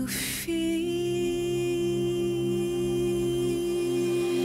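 Music: a held, sustained keyboard chord, steady and unchanging, after a short noisy swell in the first half-second.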